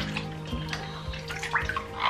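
Water splashing and sloshing in a sink as hands work a silicone brush-cleaning egg through it, in a few small splashes, over steady background music.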